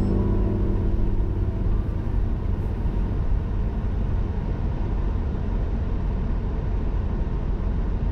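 Steady low rumble of a car driving in city traffic, heard from inside the cabin: engine and tyre noise on the road.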